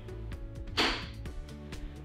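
Background music, with one short, sharp, hissy snap a little under a second in: the mushroom-head emergency-stop button on the CNC mill's control panel being twisted and popping out to release.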